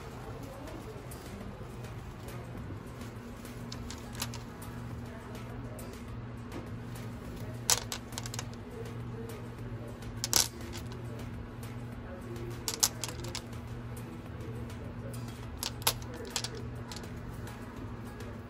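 Polished stones clinking against one another as they are picked out of a basket by hand: about five sharp, short clinks a few seconds apart over a steady low hum.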